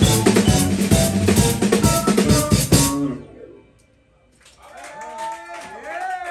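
Live band of vibraphone, drum kit and bass playing loudly, then stopping abruptly on a final hit about three seconds in. After a second of quiet, whoops and shouts from the audience start.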